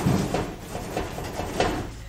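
Irregular knocks and clanks, about three a second, of metal bus heater parts being handled and worked loose by hand, with brief rattles between the knocks.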